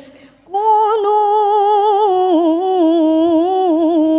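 A woman reciting the Quran in the melodic tilawah style through a microphone: after a short pause, a long held note about half a second in, with wavering ornaments and pitch stepping down in stages.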